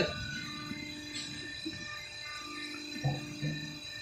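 Roof-tile roll forming machine running with a steady hum that drops out briefly near the middle, with a few light mechanical clicks.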